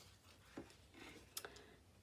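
Near silence, with two faint clicks and a soft rustle of card and paper being handled on a cutting mat.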